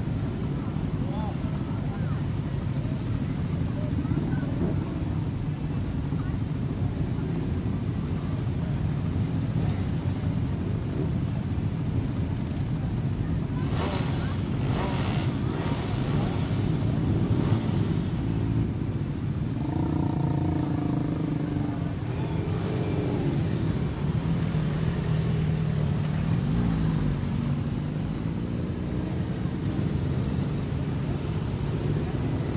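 A slow procession of motorcycles and cars passing close by, their engines making a steady low rumble, with some bikes revving up and down near the end.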